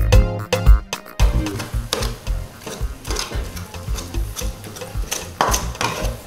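Background music that cuts off about a second in, followed by an iron spoon mashing cooked beans in a metal pot: a quick, irregular run of knocks and scrapes against the pot, with a louder stroke near the end.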